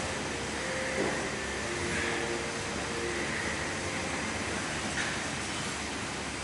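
Steady background hum and hiss of a large room, with faint steady tones and no distinct sounds standing out.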